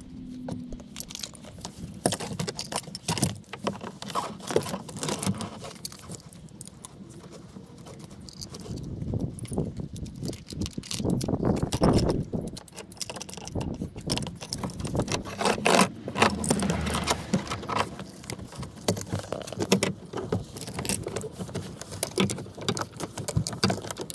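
Car seatbelt retractor assembly being handled and fitted into the door pillar: irregular clinks of its metal mounting brackets and buckle hardware, knocks against plastic trim and rustling of the webbing, busiest about halfway through.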